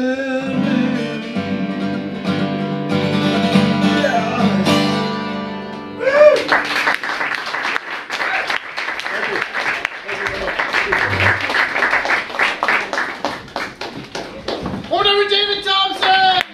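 The closing chord of a song on steel-string acoustic guitar rings out and fades over about six seconds. Then an audience applauds for about nine seconds, and a voice speaks briefly near the end.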